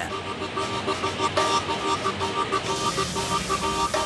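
Background music: a repeating figure of short, steady electronic notes over a noisy hiss.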